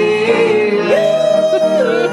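A singer performing a pop Christmas song live with instrumental accompaniment. The melody leaps up to a held note about a second in and drops back near the end.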